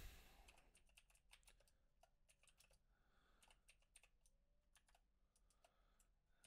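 Near silence with faint, irregular clicking of computer keyboard keys being typed.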